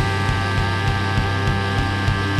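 Live heavy rock band playing: a fast, steady drum beat under a long held note that sustains through the whole stretch.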